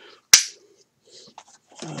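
A single sharp snap about a third of a second in, followed by faint, quiet handling sounds until speech resumes near the end.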